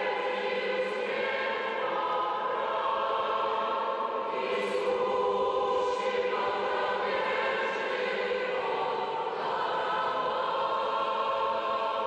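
A large choir singing an Orthodox sacred hymn in long held chords that shift every couple of seconds.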